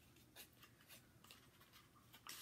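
Near silence with a few faint rustles and light taps as a small cardboard makeup box is handled.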